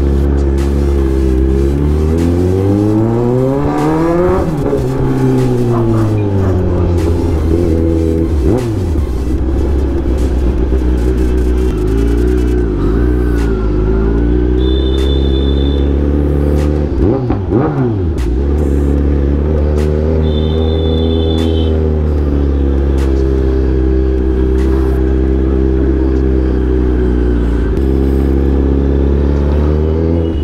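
Kawasaki Z900's inline-four engine with a loud exhaust, ridden at low speed and revved. Its pitch falls and climbs in the first few seconds, with further quick rev changes around eight and seventeen seconds in, and otherwise holds steady. A short high beep sounds twice, about fifteen and twenty seconds in.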